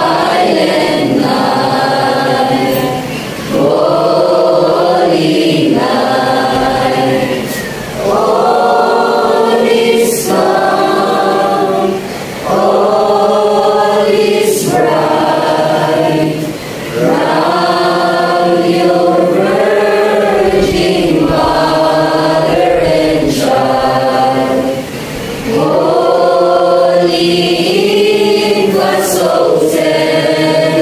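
Mixed choir of boys and girls singing together, in long sustained phrases broken by short pauses every few seconds.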